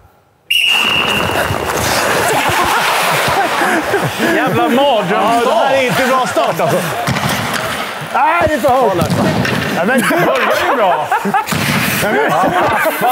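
A referee's whistle blows one long steady blast about half a second in, starting play on the ice; then players shout over each other, with knocks of sticks and balls throughout.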